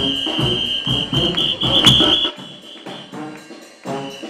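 Brass band playing a lively tune with drums and tambourine-like percussion, a steady high-pitched tone held over it; the low notes drop away a little past two seconds in.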